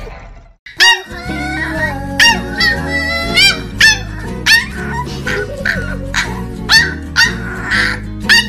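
Corgi puppy barking in short, high yips about every two-thirds of a second, starting about a second in, over background music.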